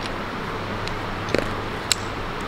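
Steady outdoor background noise with a low hum, broken by a few short sharp clicks, a pair about a second and a half in and a louder one near the end.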